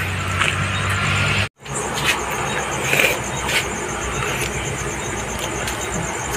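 A vehicle engine idling with a steady low hum, cut off abruptly about a second and a half in. After that, outdoor night ambience with a continuous high, rapidly pulsing trill of crickets and a few faint clicks.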